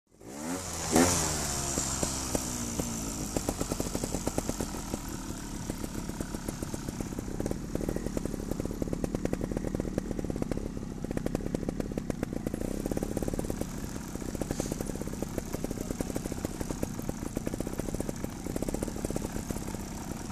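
Trials motorcycle engine revving up sharply about a second in, then running at low revs, its sound swelling and easing with the throttle as the bike is ridden slowly.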